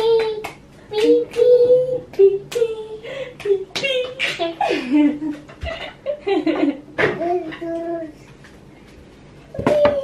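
A toddler babbling in a high voice that rises and falls, with a few sharp hand claps.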